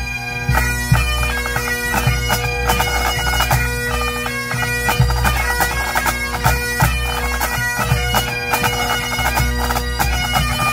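Pipe band playing: Highland bagpipes with steady drones under the chanter melody, backed by snare, tenor and bass drums.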